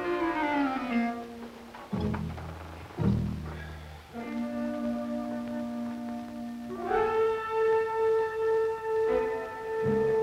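Dramatic background music: a falling phrase, then two sudden low chords about a second apart, a held note, and a rise into a long high sustained note that swells and pulses.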